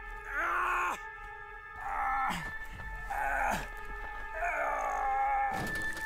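A man groaning and crying out in strain and pain, four drawn-out groans, over a film score of sustained tones.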